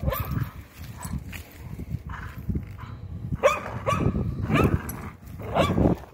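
Dogs growling low and rough as they tug, with several short whines in the second half.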